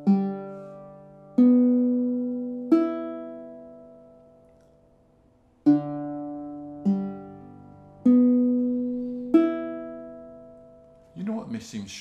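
Pat Megowan Lyric baritone ukulele, a 19-inch baritone with Amazon rosewood back and sides and a sinker redwood top, played as single chords, each left to ring and fade. Three chords come about a second and a half apart, then a long ring-out, then four more chords at the same pace.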